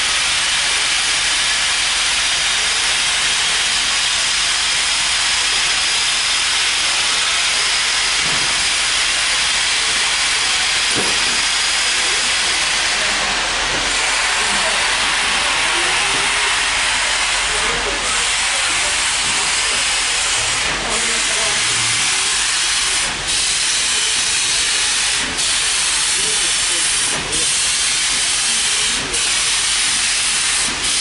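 Steady rushing noise of a passenger train in motion, heard from an open coach window: air rushing past and wheels rolling on the track. In the second half the noise dips briefly about every two seconds.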